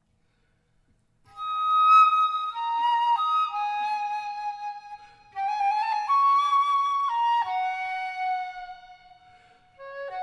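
A flute playing a slow melody of held notes, entering about a second in, in two phrases with a brief breath gap in the middle.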